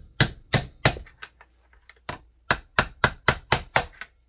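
Ball-peen hammer striking a half-inch aluminum pipe used as a driver, seating a new crankshaft seal in a Homelite XL-76 chainsaw's crankcase. About a dozen sharp taps, roughly three a second, in two runs with a lull in the middle.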